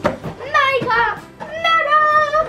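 A girl's excited wordless exclamations of surprise, ending in a drawn-out high "ooh", with a sharp click at the very start.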